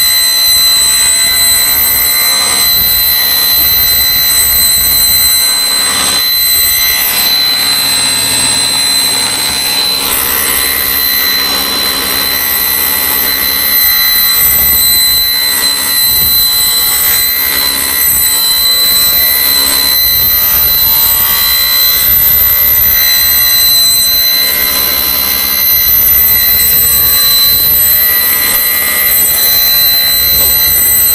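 Table saw with a thin-kerf carbide blade running with a steady, loud, high-pitched whine while ripping a thin mahogany plywood panel into a narrow strip.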